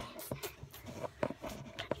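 Irregular soft knocks and rustles of a phone being handled and moved about, picked up by its own microphone.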